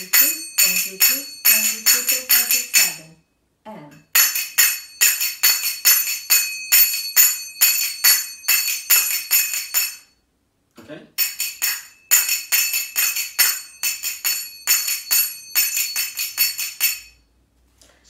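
Sagats (zills), brass finger cymbals, struck in a 3-7-3-3-7 pattern of triplets and seven-stroke right-left runs. Each phrase is a quick string of bright, ringing clicks, with a pause of about a second about three seconds in and again about ten seconds in.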